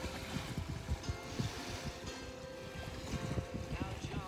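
Wind buffeting the phone microphone in gusty low rumbles, with a song from a playlist playing faintly underneath.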